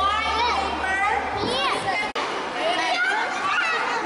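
A crowd of young children talking and calling out over one another, many high voices at once, with a brief dropout about halfway through.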